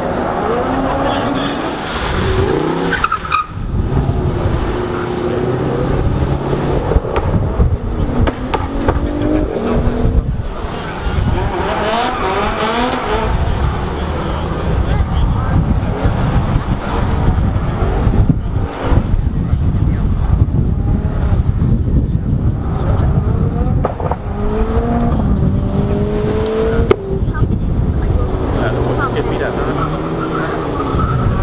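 Car engine revving hard again and again, its pitch rising and falling, with tyres screeching and spinning as the car drifts in tight donuts.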